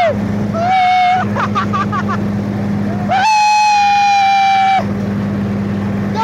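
Tractor engine running steadily, driving the fan-blower of a homemade gulal machine, a constant low drone. Over it, people let out long, loud held whooping shouts: a short one about a second in and a longer one of about a second and a half from about three seconds in.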